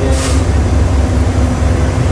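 Steady, loud low rumble of idling heavy engines from apron vehicles, with a constant hum over it and a short burst of hiss just after the start.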